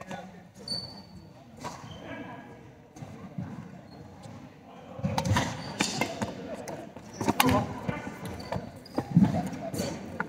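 Badminton rally on a sports-hall court: sharp racket strikes on the shuttlecock, thudding footfalls and short squeaks of court shoes, echoing in the hall. It is sparse at first and becomes busy and louder from about five seconds in.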